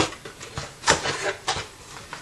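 Plastic DVD cases clacking against each other and the cardboard box as they are lifted from a stack. There are a few sharp knocks, the loudest about a second in, with softer handling noise between them.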